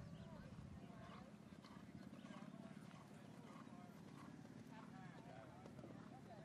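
Faint hoofbeats of a horse cantering on soft arena footing, with indistinct voices in the background.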